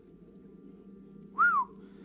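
A single short whistle about a second and a half in, rising then falling in pitch, over a faint steady background hum.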